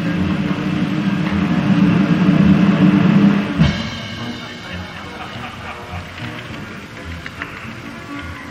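Live theatre orchestra playing underscoring. A loud held chord swells and breaks off about three and a half seconds in, then the music goes on more quietly over a steady low beat.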